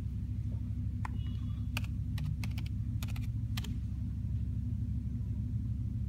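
Keys tapped on a laptop keyboard as a short comment is typed: about ten sharp keystrokes in the first four seconds, then they stop. A steady low hum runs underneath.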